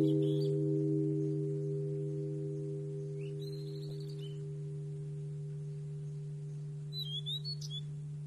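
A single struck, bell-like metal tone ringing out with a low hum and slowly fading. Short bird chirps come over it at the start, about three seconds in, and near the end.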